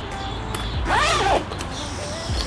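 A zipper on a white Adidas sling bag being pulled open about a second in, over soft background music.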